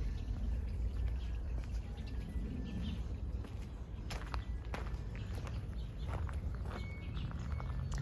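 Footsteps on concrete and then gravel, with a few sharp clicks over a low steady rumble on the microphone. A few faint bird chirps come near the end.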